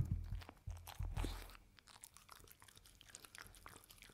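A glass mug knocked down on its side onto a silicone mat, with a second duller thud about a second in as the soft kibble-and-oatmeal mush is tipped out. A dog then licks and chews the mush, with small scattered clicks.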